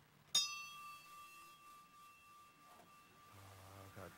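A small metal bell or chime struck once, about a third of a second in, ringing with a clear high tone and several higher overtones that fade away over about three seconds.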